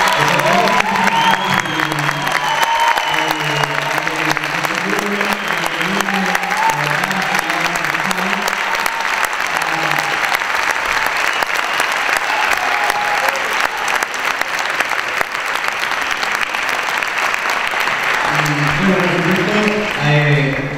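An audience applauding steadily throughout, with music playing underneath: a low melody moving in steps.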